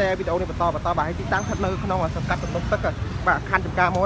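People talking over the steady low rumble of street traffic.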